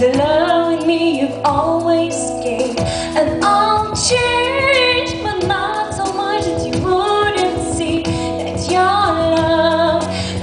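A woman singing a song into a handheld microphone, her melody gliding between held notes over a steady instrumental accompaniment.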